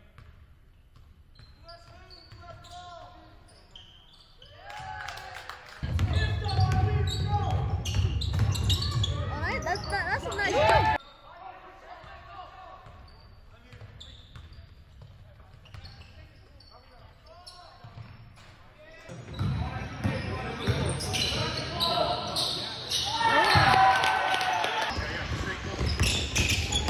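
Basketball game sound in a gym: a ball bouncing on the hardwood court under indistinct shouting from spectators and players. The shouting swells loud twice, the first time cutting off suddenly about eleven seconds in.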